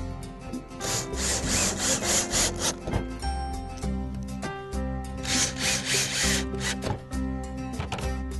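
Cordless drill driving screws through a plywood roof into a wooden frame, in two bursts: a longer one about a second in and a shorter one past the middle. Background music plays underneath.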